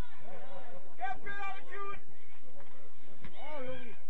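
Indistinct shouts and calls from men's voices on and around a football pitch: players and spectators calling out during play, with no clear words.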